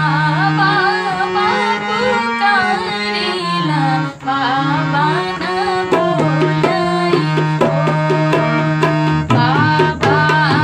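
A woman singing a North Indian bride's farewell (vidai) wedding song over harmonium chords. The tabla comes in with a steady rhythm about six seconds in.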